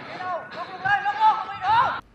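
Several players calling and shouting to each other across the pitch, voices overlapping, with one call near the end that rises in pitch.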